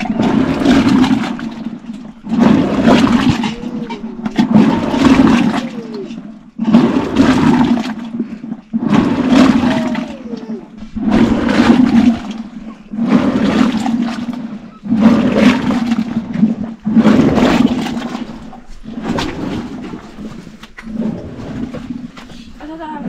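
Curd being churned into butter in a tall wooden churn: a wooden plunger is driven up and down by hand, and the liquid sloshes and splashes with each stroke, about one stroke every two seconds.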